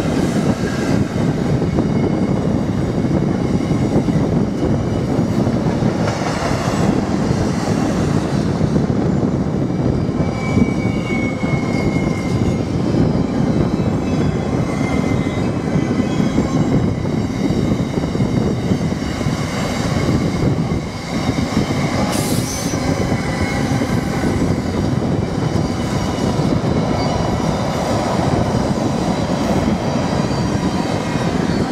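Freightliner Class 66 diesel locomotive, with its EMD twelve-cylinder two-stroke engine, passing at speed right at the start. It is followed by a long intermodal train of container flat wagons, whose wheels run steadily and loudly over the rails. A faint high wheel squeal comes and goes around ten seconds in.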